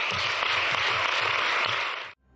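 Applause from a room of people clapping, steady and dense.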